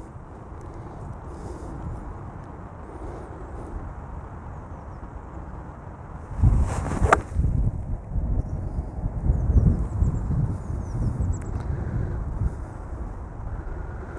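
An eight iron striking a golf ball: one sharp click about seven seconds in, over wind buffeting the microphone, with the wind rumble growing heavier in the second half.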